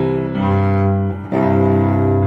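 Instrumental cello music: a bowed cello holding long pitched notes, with a brief dip between notes just past a second in.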